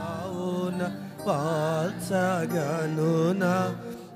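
A mixed choir of men and women singing a Telugu Christian devotional song together into microphones. The melody is slow, with wavering, ornamented notes, and the singing grows louder about a second in.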